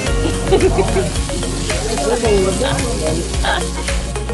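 Fish and meat sizzling on a round grill pan over a portable gas stove, with metal tongs clicking against the pan as the pieces are turned.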